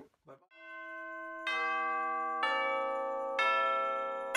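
Background music in a chime- or bell-like timbre: it fades in about half a second in, then new chords are struck about once a second, three times, each ringing on as it decays.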